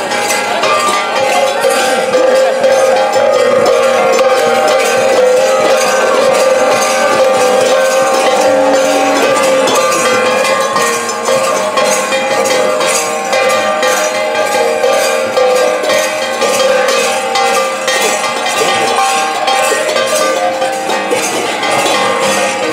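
Devotional kirtan music with brass hand cymbals (kartals) ringing in a fast, steady rhythm and a sustained sung or pitched line underneath.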